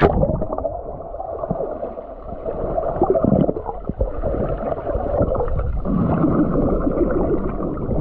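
Muffled underwater water noise picked up by an action camera held below the sea surface, with irregular gurgling swells and almost no high sound. It opens with a splash as the camera plunges under.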